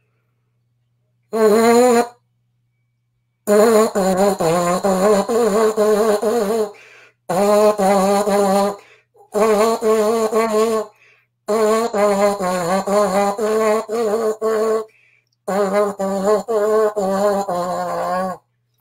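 A French horn mouthpiece buzzed with the lips alone, playing a simple tune: a short note about a second in, then five longer phrases of separately tongued notes with short pauses between them.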